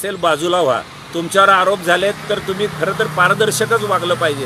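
A man speaking Marathi in an animated, declaiming voice. A low, steady hum joins underneath about halfway through.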